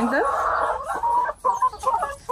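Laying hens clucking, with a dense run of calls in the first second followed by shorter separate ones.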